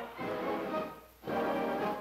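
Army marching band playing march music. It drops out briefly about a second in, then comes back.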